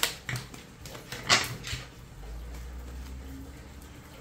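A deck of oracle cards being shuffled and handled: a few short card slaps and a brief riffle in the first two seconds, then only a faint low hum.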